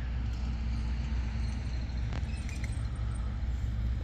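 Steady low rumble of street traffic, with a faint short chirp a little over two seconds in.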